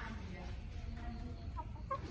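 Backyard chickens, a rooster and a hen, clucking softly while feeding, with a couple of short, sharp calls near the end.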